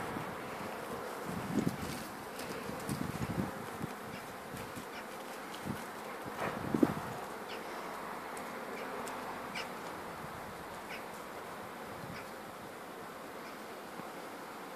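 Steady buzzing of a flying insect close to the microphone, with a few soft low thumps in the first half.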